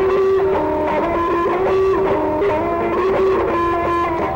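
Instrumental rock music: an electric guitar plays a melody of held notes that step up and down in pitch over a full band backing.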